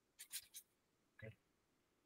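Near silence, with a few faint brief sounds and a short faint snatch of voice a little past halfway.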